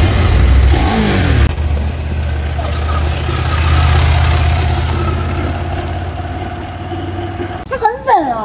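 KTM adventure motorcycle's engine running at low revs as the bike is ridden slowly, a steady low hum that stops shortly before the end. A voice is heard briefly near the start.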